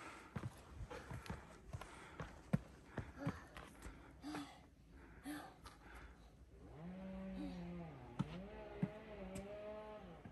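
Footsteps climbing trail steps, a run of light irregular scuffs and knocks. In the last three seconds a person's voice makes two long drawn-out sounds, each held on a pitch that rises and falls.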